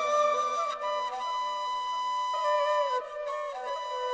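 A sampled ney, the end-blown reed flute, playing a phrase of long held notes that step to new pitches with small bends, as part of an ambient music track.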